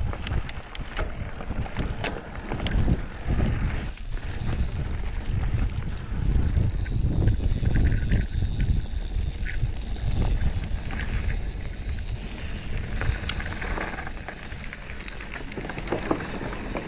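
Wind buffeting the microphone of a chest-mounted action camera as a Rocky Mountain electric mountain bike descends a rough gravel trail, with a steady low rumble and frequent rattles and clicks from the bike over the bumps.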